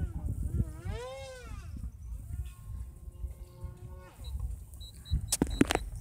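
A model airplane engine in flight, its pitch rising and falling about a second in, then running at a steady pitch. Short high beeps come in near the end, followed by a few sharp clicks.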